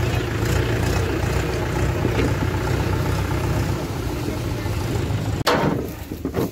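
A vehicle engine idling steadily with a low hum, faint voices around it. The sound breaks off abruptly near the end.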